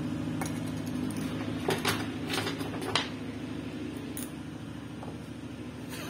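Small metal clinks and taps from handling a metal rosin tin and rosin atomizer on a workbench, about seven sharp clicks in the first four seconds, over a steady low hum.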